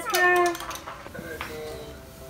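A baby's high-pitched cry, about half a second long and falling in pitch, followed by quieter vocal sounds.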